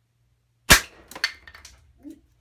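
A .25-calibre air rifle fires a Nielsen hollow-tip slug into a composite safety-shoe toe cap at a range of a couple of yards: one sharp, loud shot about two-thirds of a second in. About half a second later comes a second knock, followed by a few lighter clatters, as the toe cap is knocked off its board and the slug ricochets.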